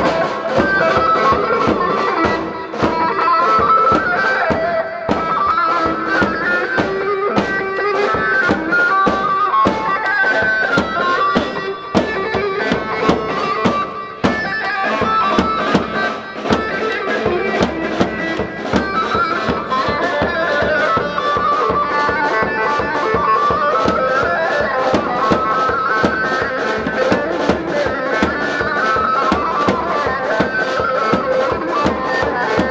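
Live Kurdish halay dance music: a reedy, shawm-like melody wandering up and down over a fast, steady drum beat.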